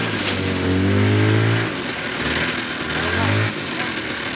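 Snowmobile engine revving: it climbs in pitch for about a second and a half, drops back, then revs up again briefly before easing off near the end.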